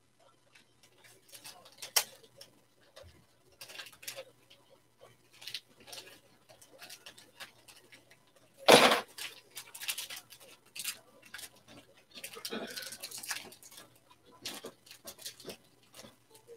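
Trading cards and pack wrappers being handled: scattered rustling and small clicks, with a louder knock-like noise about nine seconds in and a longer stretch of rustling a few seconds later.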